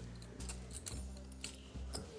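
Scattered light clicks of poker chips being handled at the table, over a quiet steady music bed.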